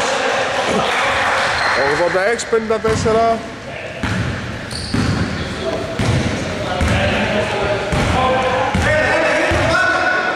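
A basketball being dribbled on a hardwood court, a run of low thuds in a large gym hall, with voices.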